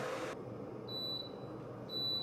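Temperature-control electric kettle beeping twice, high-pitched beeps about a second apart, signalling that the water has reached its set temperature of 175 °F.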